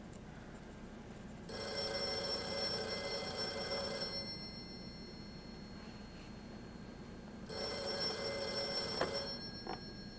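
Black desk telephone's bell ringing twice, each ring about two and a half seconds long with a pause of about three seconds between. Near the end there are a couple of clicks as the handset is lifted to answer.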